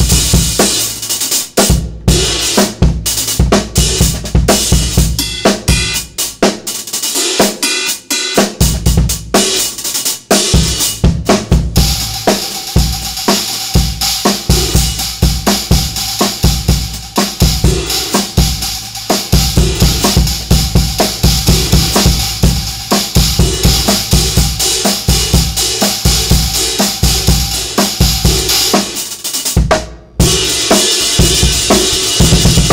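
A drum kit groove with bass drum and snare, keeping time on an improvised 20-inch hi-hat made from two ride cymbals, a Meinl Byzance Dark Ride on top of a Sabian AA El Sabor Ride. For about the first twelve seconds the strokes come with short gaps. After that a continuous cymbal wash with a sustained ringing tone runs under the drumming.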